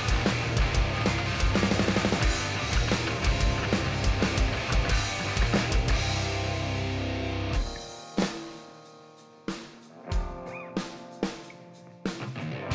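Live rock band with electric guitars, bass guitar and drum kit playing full out over a steady kick-drum beat. About two-thirds of the way through the band breaks off into a sparse stop-time passage: a few separate hits that ring out in the gaps.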